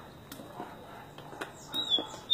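A caged papa-capim (yellow-bellied seedeater) starting to sing near the end: a high, thin whistled note that falls slightly. Before it there is only faint background with a few light clicks.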